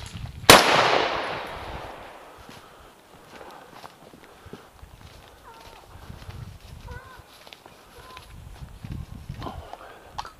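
A single close rifle shot about half a second in, loud, its report echoing through the woods and fading over about two seconds.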